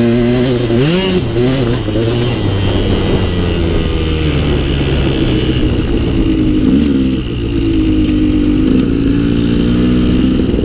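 KTM 200 XC-W single-cylinder two-stroke dirt bike engine running through an FMF Turbine Core spark-arrestor silencer as it is ridden. The revs rise sharply about a second in, settle lower, then pick up again near the end.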